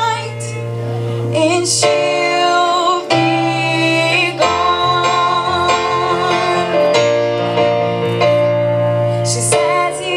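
A woman sings long, held notes with vibrato into a microphone, over chords played on a Yamaha Motif ES6 keyboard.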